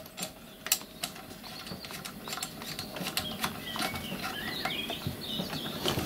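Cable plugs clicking and rattling as they are handled and pushed into the rear sockets of a Yaesu FT-857D radio, with scattered sharp clicks over a steady rustle of the cables.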